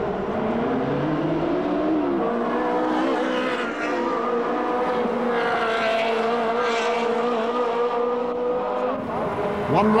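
Ferrari 360 Challenge race car's V8 engine running hard at speed, its pitch rising over the first couple of seconds and then holding a steady high note, with fresh rises and falls near the end.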